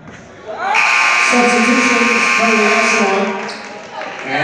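Gymnasium scoreboard buzzer sounding loudly for about two seconds, starting under a second in and cutting off around the three-second mark, with voices over it.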